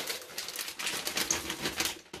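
Plastic packet of chocolate chips crinkling as the chips are shaken out, falling into a metal mixing bowl in a rapid patter of small clicks.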